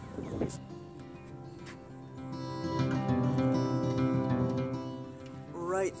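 Background music of held, sustained chords, swelling louder in the middle and easing off near the end.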